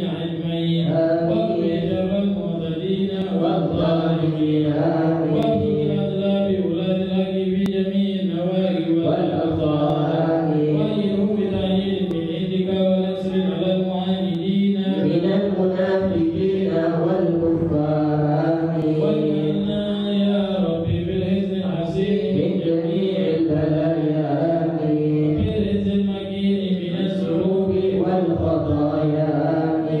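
Men's voices chanting Arabic dhikr together in a steady, unbroken melodic recitation.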